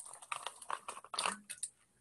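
Faint, irregular clicks and small noises, several short ones scattered through a pause in speech.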